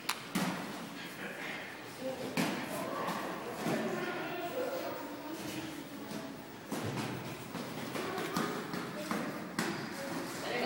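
Dull thuds of boxing gloves landing during sparring, about half a dozen hits spaced irregularly, with low voices in the background.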